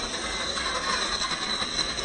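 Electric motor and geared drivetrain of a Traxxas TRX4 RC rock crawler, fitted with a 27-turn brushed motor, whining steadily as the truck crawls slowly over rock and gravel. Small clicks of stones are heard under the tyres.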